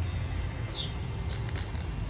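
Steady low outdoor background rumble with a brief high bird chirp a little under a second in, and a few faint soft ticks of small packaging being handled.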